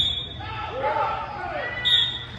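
Shouting voices echoing in a large indoor arena during a lacrosse game, with a short high steady tone near the end.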